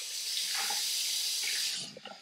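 Bathroom sink tap running in a steady hiss of water, then shut off near the end.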